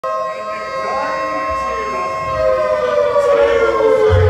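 Air-raid siren sound effect played through a live PA as a rock song's intro, its wail sliding slowly down in pitch.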